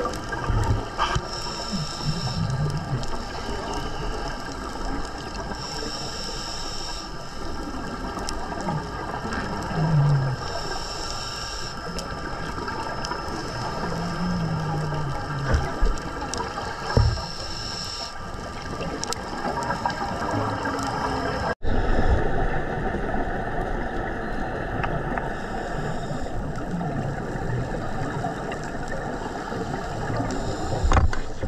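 Scuba diver's regulator breathing underwater: a breath about every four seconds, each with a short hiss and the low bubbling of exhaled air, over a steady hum.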